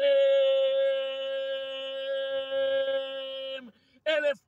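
A man's singing voice holds one long, steady note, then breaks off shortly before the end.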